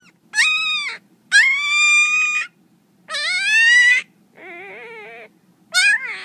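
A puppy giving a series of high-pitched whining howls, each about half a second to a second long and rising or holding high in pitch. A quieter, lower, wavering one comes in the second half, and another call starts just before the end.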